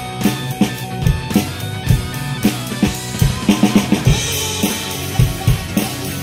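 A drum kit plays a steady kick-and-snare rock beat along with the song's recorded guitar and bass. About three and a half seconds in, a quick fill of rapid hits leads into heavier cymbal wash.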